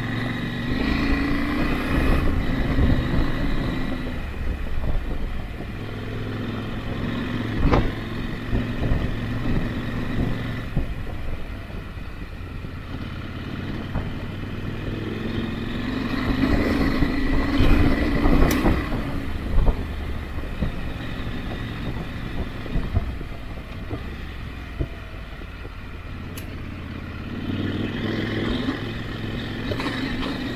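Motorcycle engine running at low speed on a gravel road, its note swelling a few times as the throttle opens, with a couple of sharp knocks along the way.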